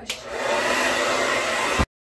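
Hot Tools blow dryer running on its hottest setting and highest speed: a steady rush of air that builds up over the first half-second, then cuts off abruptly near the end.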